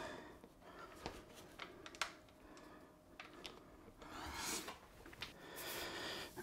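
Faint handling noises from a Fractal Design R5 PC tower being worked on by hand: a few light clicks about one and two seconds in, then a longer rubbing near the end as the case's side panel is handled.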